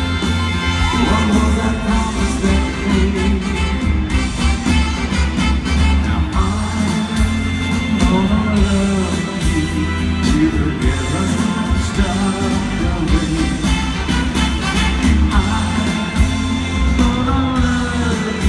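A live rock band plays loudly through a concert PA, with drums, electric guitars, keyboards and heavy bass. It is heard from within the audience.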